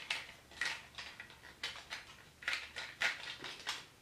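Plastic parts and ratchet joints of a knock-off Transformers figure clicking and clacking as they are bent and folded by hand, a handful of light, scattered clicks.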